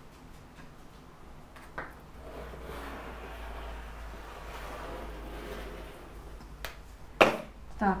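Rotary cutter blade rolling along a metal straight edge through several layers of folded cotton sheet: a soft, steady rasping hiss lasting a few seconds. Two sharp clicks come near the end.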